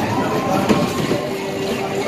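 Small tractor ride vehicles towing rider trailers rumble as they roll and swing around a concrete ride floor. A held note of music or singing runs over it, higher in the first second and lower in the second.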